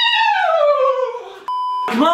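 A man's voice holding one long drawn-out note that slides steadily down in pitch, then cut off by a short electronic censor bleep near the end.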